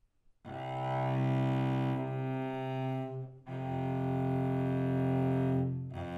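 Cello played with the bow in long sustained notes. One stroke starts about half a second in and is held for nearly three seconds, there is a short break, then a second long stroke follows. The notes are an intonation demonstration comparing a Pythagorean F with a just F, which is tuned 22 cents higher.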